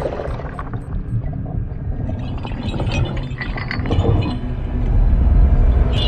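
Film score music over a deep underwater rumble that grows louder near the end.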